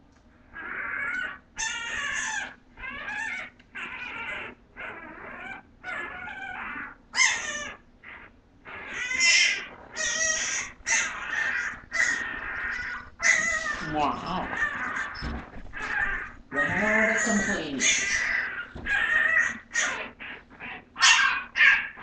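Litter of young bulldogge puppies crying and squealing in a continuous run of short high-pitched cries, with a few longer, lower whines about two-thirds through. The crying is taken for hunger.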